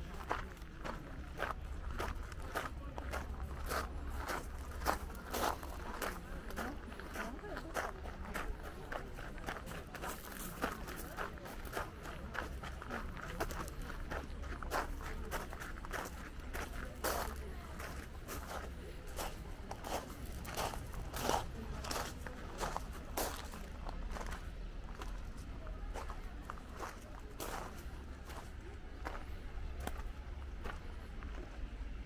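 Footsteps on a gravel path, about two steps a second at a steady walking pace, over a steady low rumble.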